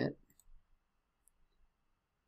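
Faint clicking of a computer mouse button, a couple of short clicks about a third of a second in.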